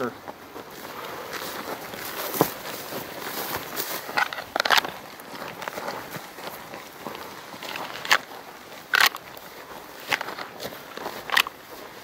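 Footsteps through dry grass and brush, a steady rustling broken by a few irregular sharper crunches.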